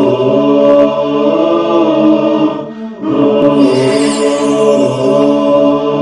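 Vocal intro theme sung as a chant by several voices in long held notes, in the style of an Islamic nasheed. It dips briefly near the middle before a new phrase begins.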